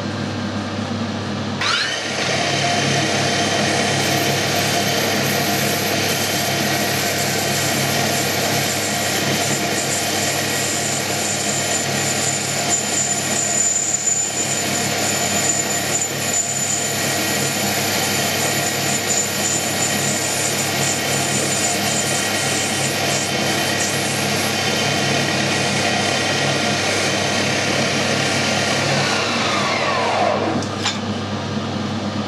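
Metal lathe spindle spinning up with a rising whine about a second and a half in, running steadily with gear whine while turning a small brass part, then winding down near the end.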